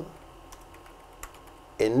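Faint keystrokes on a computer keyboard as text is typed, with one slightly louder click partway through.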